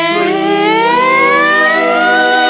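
A female singer's long held note sliding slowly upward over sustained backing notes, with the drums dropped out, in a Bollywood song.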